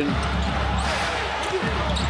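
Basketball being dribbled on a hardwood court over the steady noise of an arena crowd.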